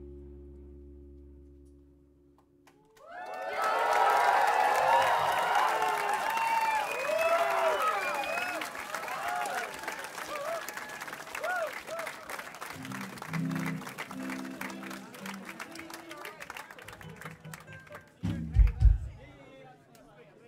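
A held final chord fades away, then about three seconds in a concert crowd breaks into applause and cheering that slowly dies down. Short runs of low instrument notes sound as it fades, and two loud low thumps come near the end.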